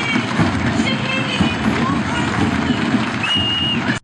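Outdoor crowd noise from a stadium parade: a dense, steady babble of many voices, with a brief high steady tone near the end.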